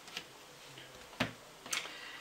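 A few light clicks and taps from tarot cards being handled on a cloth-covered table, the sharpest a little past a second in.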